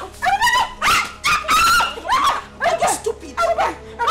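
Two women's wordless shouts and cries as they fight, a rapid string of short, sharp yells with sliding pitch.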